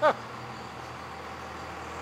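The tail of a short laugh right at the start, then a steady low hum of background machinery.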